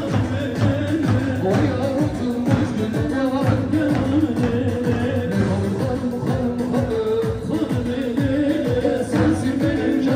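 Amplified live line-dance music: a man singing into a microphone over a held melody and a steady drum beat, about two strokes a second.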